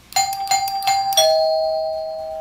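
Doorbell chime struck by its relay-driven solenoid plungers. A higher tone is hit about three times in quick succession, then a lower tone is hit about a second in, and both ring on together.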